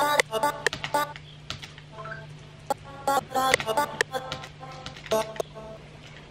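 Short pitched stabs of a single sung vowel sliced from a vocal acapella, played from a sampler at several pitches as melody notes are placed and auditioned. They come at irregular intervals, mixed with clicking.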